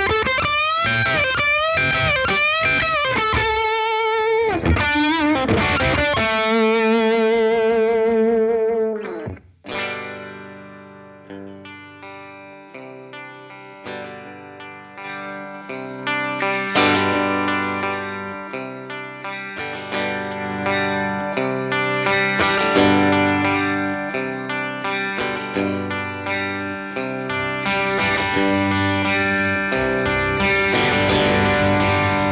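Electric guitar played through a Blackstar LT Drive overdrive pedal into an amp. It opens with a Les Paul-style guitar playing overdriven lead lines with string bends and vibrato. After a brief break about nine seconds in, a Stratocaster-style guitar plays chords while the pedal's gain knob is turned up, and the sound grows steadily louder.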